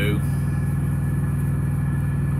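Semi truck's diesel engine idling, a steady low hum heard from inside the cab.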